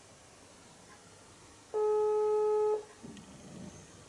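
Telephone ringback tone through a mobile phone's speaker: one steady beep about a second long, the call ringing at the other end and not yet answered.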